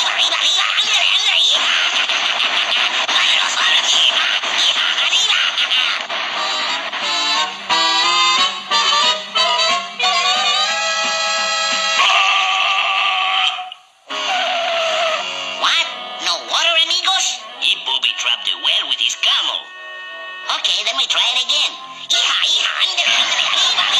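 Cartoon soundtrack: a music score with sound effects and cartoon vocal noises. It is dense and noisy for the first several seconds, with clear musical tones after that and a brief drop out about two-thirds of the way through.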